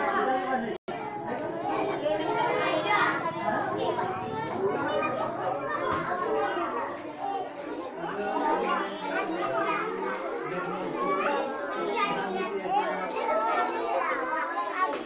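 Many young children talking over each other, a continuous babble of small voices, broken by a momentary dropout in the audio about a second in.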